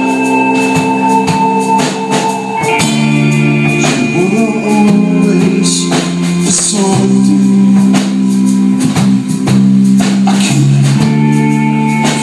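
A live rock band playing: electric guitars holding sustained chords over drums and cymbals.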